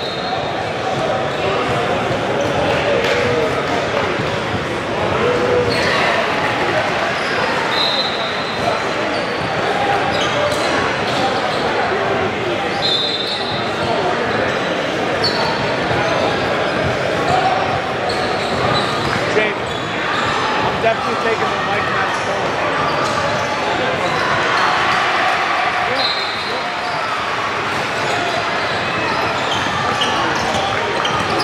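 Basketball being bounced on a hardwood gym court, with short high sneaker squeaks several times over steady crowd chatter.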